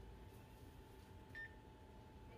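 Near silence with a faint steady hum, broken about one and a half seconds in by a single short electronic beep from a store checkout terminal.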